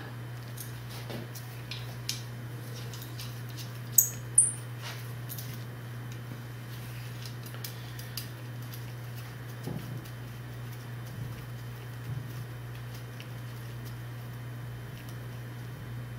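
A small wrench clicking and tapping on stainless steel hard lines and AN fittings as they are tightened, with two sharp high clinks about four seconds in. A steady low hum runs underneath.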